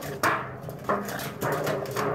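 Dogs at a chain-link gate giving about four short, loud vocal outbursts, roughly half a second apart.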